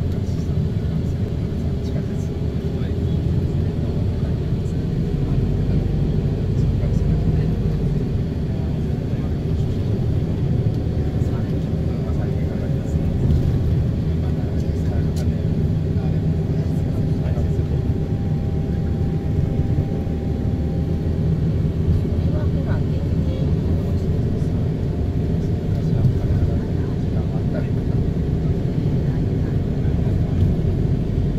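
A city bus's engine and road noise heard from inside the cabin while it drives, a steady low rumble.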